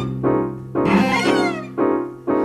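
Cello and electric keyboard playing between sung lines, over a held low note, with a pitch sliding downward about a second in.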